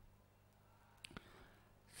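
Near silence: faint room tone with a low hum, broken by two brief faint clicks about a second in.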